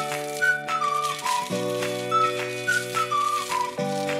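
Background music: a bouncy children's tune with a whistle-like melody over sustained chords and a steady light beat.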